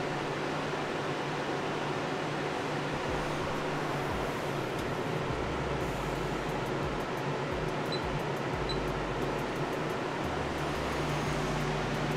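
Steady fan-like whirring air noise with a low, even hum underneath.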